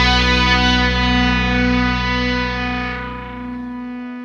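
Final chord of a rock song: distorted electric guitar held and ringing out, fading over the last second as the lowest notes drop away and one tone is left sustaining.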